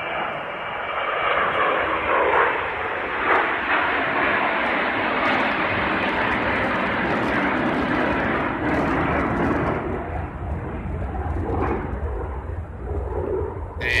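Airplane flying overhead, its engine noise loudest over the first several seconds and fading away in the second half.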